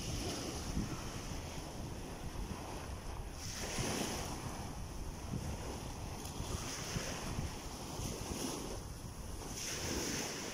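Small waves washing up over the sand at the water's edge, with wind buffeting the microphone.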